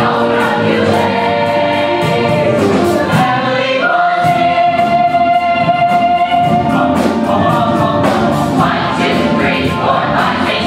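Stage-musical ensemble chorus of many voices singing with music; about four seconds in the voices settle on a long held note for about three seconds before moving on again.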